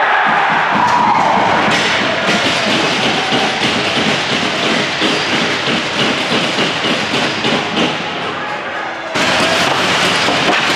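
Ice hockey arena noise right after a goal: shouting voices over a dense run of thuds and knocks. The sound changes abruptly near the end.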